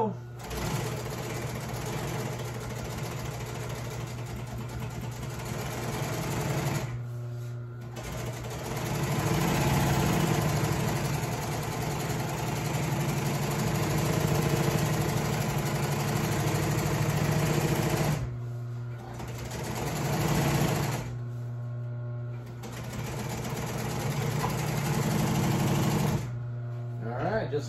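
Industrial sewing machine stitching an upholstery cover seam, running in spells of several seconds with short stops about 7 seconds in and twice between about 18 and 23 seconds in. A steady hum carries on under it even while the needle stops.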